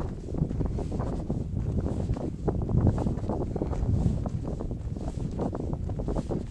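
Wind buffeting the microphone outdoors, an uneven, gusty low rumble.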